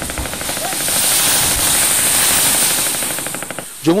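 A concrete building breaking apart and falling into the river as the eroding bank gives way: a loud, continuous rush of crumbling concrete and brick with a rapid crackle of many small impacts. It builds over the first second and dies down near the end.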